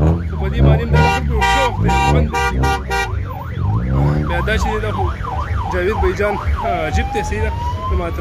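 Electronic siren cycling through its tones: fast warbling notes at first, then a quick up-and-down yelp about two to three sweeps a second, then a slow rising wail near the end. Under it is a steady low engine rumble.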